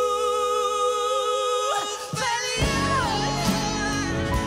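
Live pop duet, male and female voices, with acoustic guitar. The singing holds one long note over sparse backing, then breaks into a sliding vocal run about two seconds in. The full accompaniment comes back in just after, under a moving melody.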